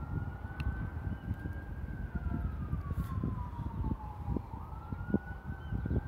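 An emergency vehicle siren wailing, its single tone slowly rising, holding high, falling away through the middle and rising again near the end. Under it runs a steady low rumble of city and wind noise.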